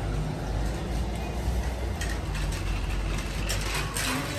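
A red plastic shopping-basket trolley being pulled out and wheeled, rattling and clicking from about halfway through, over a steady low rumble.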